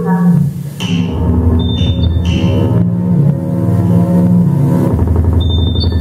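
Live electronic industrial soundscape: layered synthesizer drones over a low, rapidly pulsing bass, with short high beeping tones about two seconds in and again near the end.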